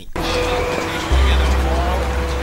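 City street traffic noise mixed with background film music; a deep bass tone comes in about a second in.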